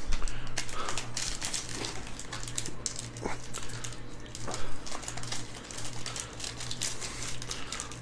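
Foil trading-card pack crinkling as gloved hands handle it and tear it open, with scattered crackles over a steady low hum.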